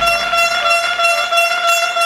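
Air horns sounding one long, steady, held tone.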